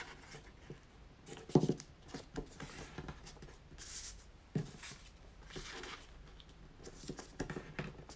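Red paper circles being folded in half and pressed flat by hand on a tabletop: short bouts of paper rustling and rubbing as the folds are creased. A sharp knock comes about one and a half seconds in, and a lighter knock near the middle.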